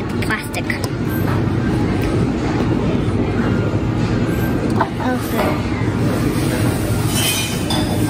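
Busy café shop ambience: indistinct voices and background music over a steady low rumble, with a couple of light knocks about five seconds in.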